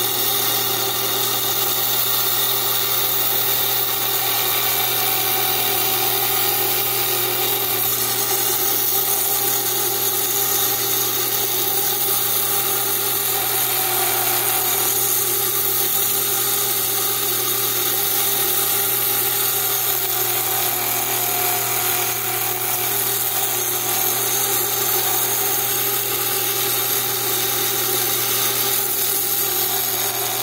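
Small wet lapidary saw running steadily, its diamond blade cutting through agate as the stone is fed by hand. Over the motor's even hum, the cutting whine shifts slightly in pitch now and then as the feed pressure changes.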